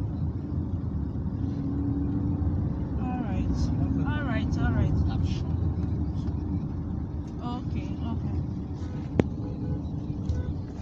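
Steady low road and engine rumble heard from inside a car cabin, with muffled voices in the middle and one sharp click about nine seconds in.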